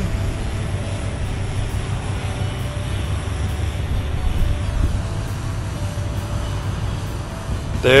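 Wind buffeting the microphone: a steady, uneven low rumble with a faint hum underneath.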